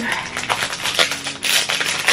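Packaging of a face-mask set crinkling and rustling as it is handled, a quick irregular run of small crackles and clicks.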